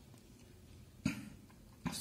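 A single short cough about a second in, over otherwise quiet room tone.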